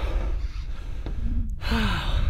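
A man breathing out hard twice, out of breath from hauling himself up; the second breath ends in a short, falling voiced sigh.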